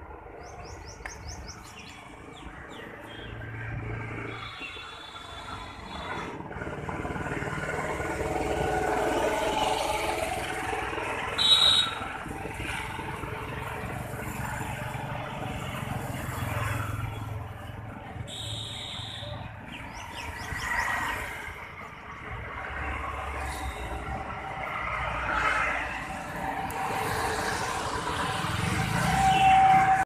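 Roadside ambience: traffic noise swelling and fading as vehicles pass, with birds chirping. Two short high-pitched sounds stand out, the louder about twelve seconds in and another near nineteen seconds.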